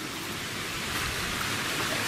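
Steady, even hiss of outdoor forest ambience with no distinct events.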